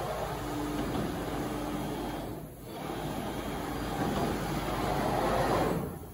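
Salvamac Salvapush 2000 optimising saw running: a steady mechanical noise from the machine, dipping briefly about two and a half seconds in and cutting off near the end.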